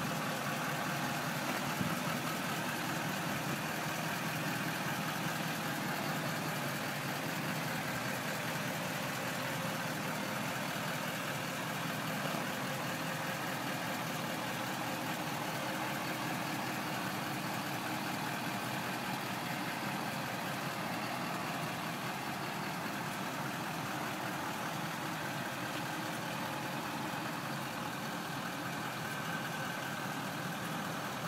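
Tow truck engine idling steadily.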